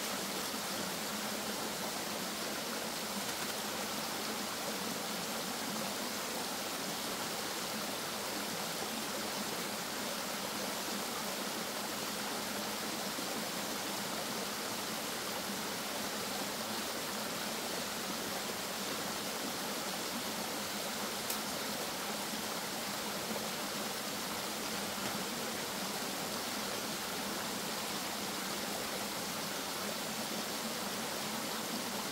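Small mountain stream cascading over rock, a steady, even rush of water. A single brief click about two-thirds of the way in.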